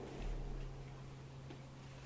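Quiet room tone with a steady low hum and a couple of faint ticks.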